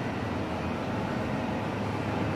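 Steady low background rumble and hiss with no distinct events.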